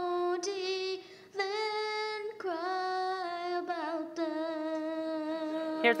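A young girl singing a slow song unaccompanied, in long held notes with a short break about a second in; an old recording of her own childhood song.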